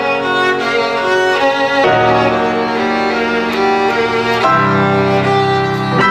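Violin and grand piano playing together: the violin holds long bowed notes over sustained piano chords. The chords change about two seconds in and again near the end, part of a piece built on a repeating cycle of fixed chords.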